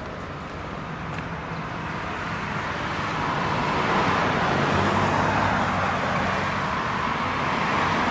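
Road traffic: a motor vehicle's engine and tyre noise growing louder over about the first four seconds, then holding steady.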